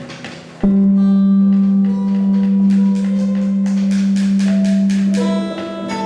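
A group of classical guitars playing a slow ambient piece. Just under a second in, a low note starts and holds steady for about four and a half seconds while a stream of single plucked notes rings out above it.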